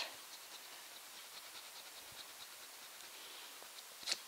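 Coin scratching the coating off a paper scratchcard: faint, quick repeated strokes.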